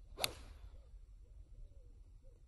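Golf iron swung from a fairway bunker: a quick rising swish ending in a sharp strike of the clubface on ball and sand about a quarter second in, followed by a short fading hiss.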